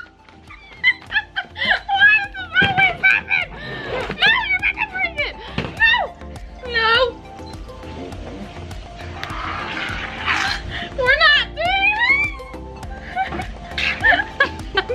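Two people shrieking and laughing in wordless, sharply rising and falling cries, over steady background music.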